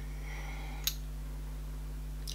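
Quiet room tone with a steady low electrical hum and one short, sharp click a little under a second in, from handling a small roll-on perfume bottle.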